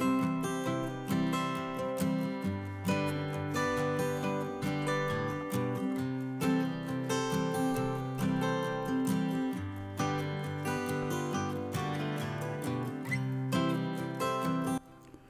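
Background music played on acoustic guitar, with plucked notes in a steady rhythm.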